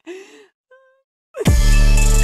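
A breathy sigh-like exhale, followed by a brief pitched note. About a second and a half in, loud music starts with a drum hit over a sustained chord.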